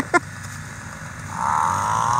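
Snowmobile engine revving up about a second in, then running on at a steady high-pitched drone.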